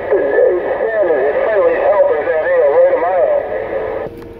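A distant station's voice coming in over a Stryker SR-955HP radio's speaker: continuous, muffled and unintelligible, with the thin, narrow sound of a radio and faint steady whistle tones underneath. The transmission cuts off abruptly at the end.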